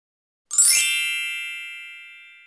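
A bright, shimmering chime sound effect for a logo intro. It strikes about half a second in with many high ringing tones, then slowly fades away.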